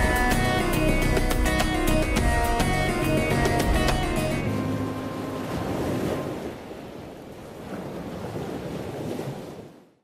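Background music with a beat that ends about four and a half seconds in, followed by the wash of ocean surf, swelling and easing, that fades out at the end.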